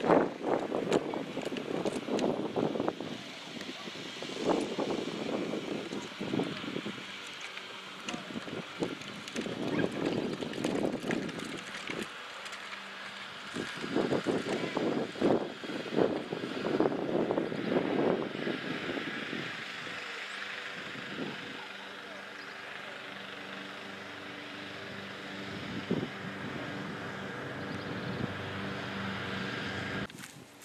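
Wheels of a child's ride-on toy tractor and the towed wheeled cannon replica rolling over gravel and grass, an uneven rattling crunch that settles into a steadier hum in the last third.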